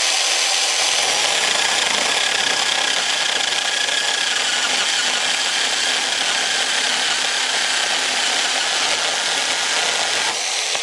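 Yard Force cordless mini chainsaw running at full speed and cutting steadily through an oak log: an even, unbroken cutting noise with a faint steady high tone from the motor and chain.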